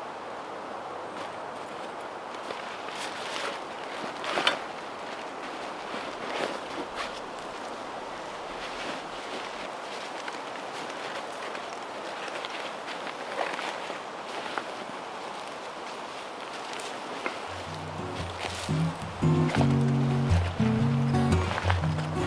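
Rustling and light clatter of camping gear and pouches being packed into a backpack, short scattered clicks over a steady outdoor hiss. Background music with a stepping bass line comes in about three-quarters of the way through.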